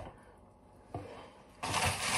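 A faint knock about a second in, then a kitchen tap turned on with water running steadily into the sink from about a second and a half in.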